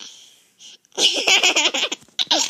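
A baby laughing. A soft breathy sound at first, then about a second in a loud run of quick, choppy giggles.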